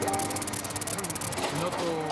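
Engine of heavy rescue machinery running steadily with a rapid, even clatter, under faint voices.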